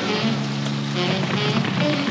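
Cartoon music score with held low notes, over a steady fizzing hiss of overflowing soap suds.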